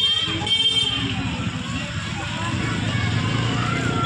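Motorcycle engine running at low speed close by, under the chatter and shouts of a crowd of children.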